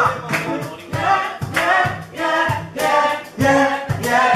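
Live band music with singing, the sung phrases broken by short gaps over a steady beat.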